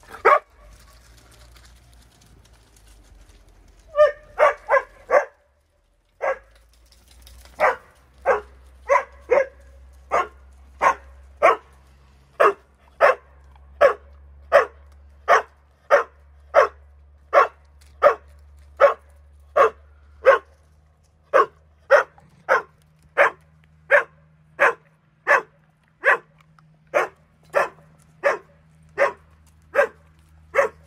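A dog barking: a single bark, a quick run of four a few seconds later, then a steady string of barks, nearly two a second, from about seven seconds in.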